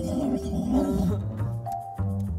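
Cartoon penguin character giving a low, rough groan in two swells, over background music with a steady bass line.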